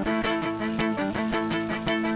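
Acoustic band music with no singing: a bowed fiddle plays over strummed acoustic guitar in a quick, even rhythm.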